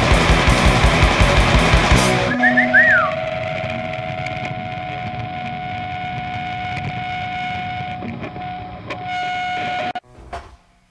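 Fast punk rock with drums and distorted electric guitars ends abruptly about two seconds in. A single electric guitar note then rings on as steady feedback, with a brief wavering bend just after the band stops, until it cuts off near the end.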